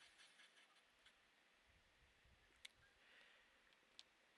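Near silence: room tone, with one faint short click a little past halfway.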